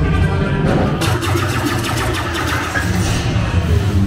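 Dark ride's onboard soundtrack: music over a steady low rumble, with a quick run of sharp, crackling effects starting about a second in.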